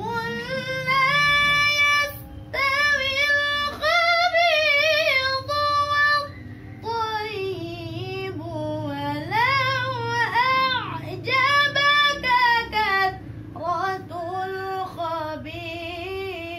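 A young woman reciting the Qur'an unaccompanied in the melodic tilawah style: high held notes with wavering, ornamented turns, sung in several long phrases with short pauses between them.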